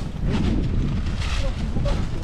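Wind buffeting the microphone: a steady low rumble with gusty noise over it, the sign of strong mountain wind on an open camera mic.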